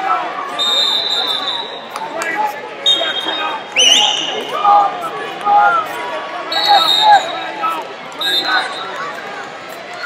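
Referee whistles blowing four short blasts spread through the gymnasium, one sliding up in pitch as it starts, over coaches and spectators shouting.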